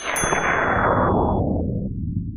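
Title-card sound effect: a sharp metallic clang with high ringing tones at the start, then a loud noisy whoosh that falls steadily in pitch.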